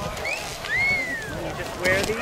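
People's voices calling out, with a long high call that rises and then falls about a second in and a short burst of rising calls near the end.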